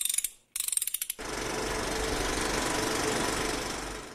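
Sound effects for an animated logo: a few sharp clicks and a quick burst of ratcheting ticks, then a steady, fast mechanical rattle lasting about three seconds that cuts off just before the end.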